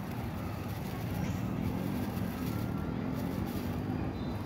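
Low rumble of a passing motor vehicle, swelling through the middle and easing near the end, with a few faint short bird chirps over it.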